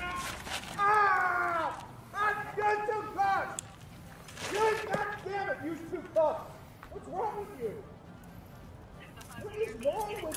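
Raised human voices, high-pitched and strained, in several short bursts with the words unclear.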